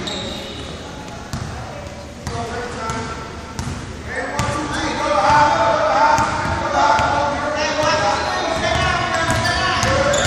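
Basketball dribbled on a hardwood gym floor, giving a few sharp bounces, with voices calling out in the gym that grow louder about halfway through.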